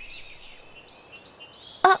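Faint woodland background ambience with a few soft, short high bird chirps, then a brief voiced exclamation near the end.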